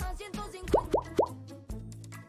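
Three quick rising bloop pop sound effects, about a quarter second apart, over background music with a steady bass line.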